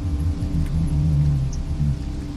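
Dark ambient background music: a low sustained drone with slow, deep notes shifting beneath it.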